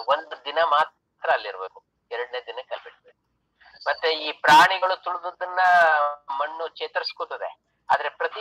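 Speech only: a man talking over a video-call connection. His voice is thin, band-limited and broken by short pauses.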